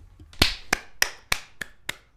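A person clapping hands close to the microphone: six sharp claps, about three a second, starting about half a second in.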